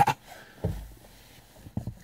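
A pause in talk inside a car: a quiet cabin with a few soft low thumps, about two-thirds of a second in and again near the end.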